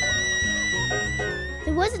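A young girl's long, high-pitched squeal of delight, held steady and sagging slightly in pitch before fading about a second and a half in, over background music.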